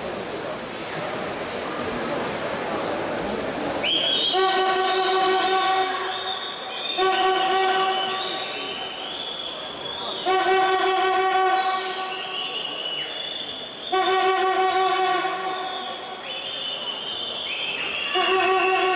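A horn sounding in long, loud blasts of about two seconds each, roughly every three and a half seconds, starting about four seconds in, over the steady noise of a pool hall.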